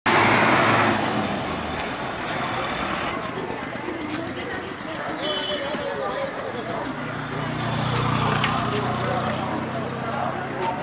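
Roadside traffic and people talking: a motor vehicle engine is loudest in the first second, voices waver through the middle, and a steady low engine hum comes in about seven seconds in.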